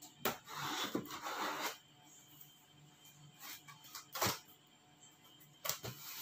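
A blade slicing open the packaging tape on a box: a rasping cut lasting about a second and a half near the start, then a few sharp clicks and scrapes of the cutter against the box.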